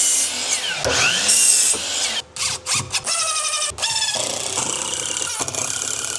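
DeWalt sliding miter saw cutting through a wooden board, in short loud bursts with the blade whining and winding down between cuts. A short laugh comes in early on.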